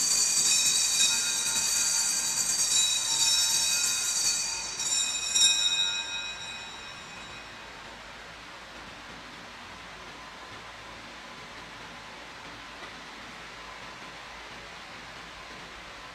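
Small altar bells ringing at the elevation of the host, marking the consecration: several high, clear metallic tones sustained together, struck again about five seconds in, then fading away by about seven seconds into a steady low room hum.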